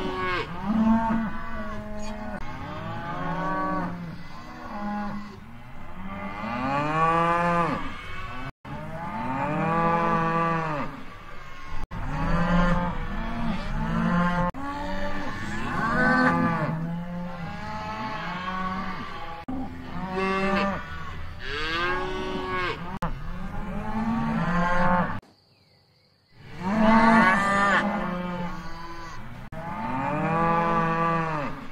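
Cattle mooing over and over, several cows at once with their long moos overlapping, each call rising and then falling in pitch. The sound drops out briefly twice, and breaks off for about a second near the end before the mooing resumes.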